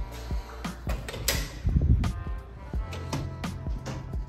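Background music with a steady beat. Between one and two seconds in, a louder rush of noise comes as a glass exit door is pushed open by its push bar.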